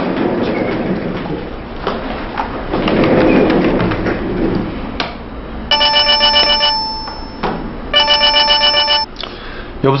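Mobile phone ringing: two short electronic ring bursts, each about a second long and a little over a second apart, in the second half.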